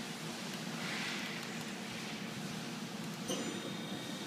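Okuma & Howa Millac 438V CNC vertical machining center running with a steady low hum; about three seconds in a click is followed by a faint, steady high whine as the spindle is started.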